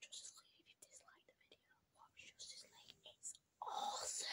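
Faint whispering in short, broken bursts, with a louder voice coming in near the end.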